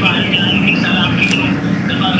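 Indistinct voices on a smartphone video call, heard through the phone's small speaker over a steady background noise.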